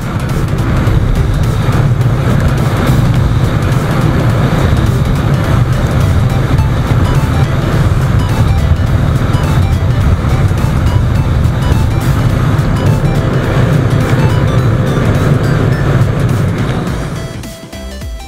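Yamaha Sniper MX 135 single-cylinder engine with a power-pipe exhaust, running steadily at riding speed, heard from on board under electronic background music. It fades out near the end.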